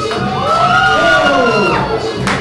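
Crowd of onlookers cheering and whooping, many voices rising and falling together for about a second and a half, over loud music for a breakdance battle.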